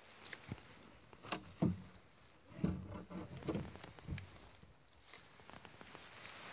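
Irregular footsteps and light knocks, several clustered in the middle, from someone walking on ground strewn with wood shavings.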